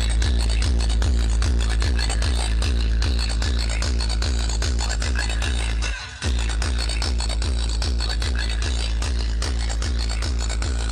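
Loud electronic dance music with very deep bass and a steady beat, played through a large DJ speaker rig during its sound test. The music cuts out briefly about six seconds in.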